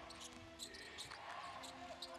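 Basketball being dribbled on a hardwood court: faint, repeated bounces over a low arena background.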